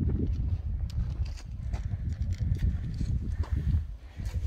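Footsteps crunching and clattering on loose volcanic scree, irregular sharp crunches several times a second over a steady low rumble.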